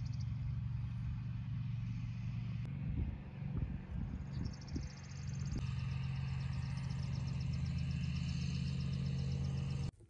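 A steady low engine hum, like a motor idling, with a few irregular low knocks about three to five seconds in.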